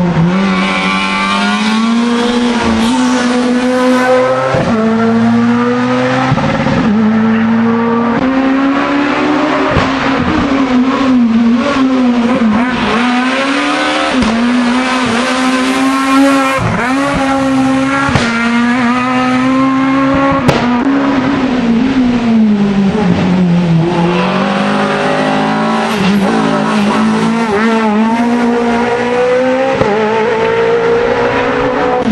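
Rally cars' engines run at high revs through a hairpin, one car after another. The pitch climbs under acceleration and drops sharply at each gear change or lift for braking.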